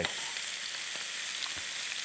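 Diced smoked bacon and lamb cutlets frying in pans on the hob: a steady sizzle, the bacon in a pan with no added oil.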